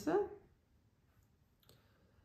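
Near silence: quiet room tone after a spoken word trails off, with one faint short click a little before the end.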